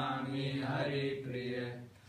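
A man chanting Sanskrit Vaishnava prayers (pranam mantras) in a steady, nearly level-pitched recitation, breaking off for a breath near the end.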